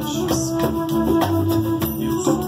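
Live band music: a long held note over chords, with hand percussion struck in time.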